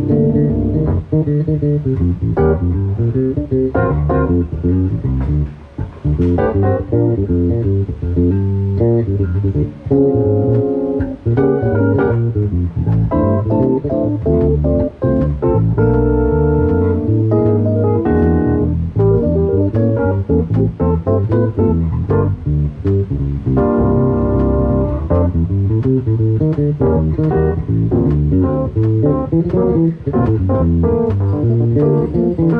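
Live instrumental duo of electric bass guitar and Yamaha CP stage piano: the bass plays a busy line under sustained keyboard chords.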